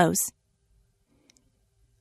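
The last syllable of a woman's narrated sentence, then near silence with a single faint click a little over a second in.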